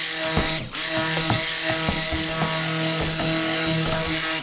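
Handheld stick blender running steadily in a tub of thick cold-process soap batter, a motor hum with a hiss over it, broken by irregular light clicks.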